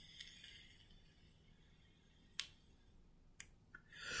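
Near silence with a faint soft hiss near the start and a few small sharp clicks, the clearest about two and a half seconds in, as someone draws on a JUUL vape.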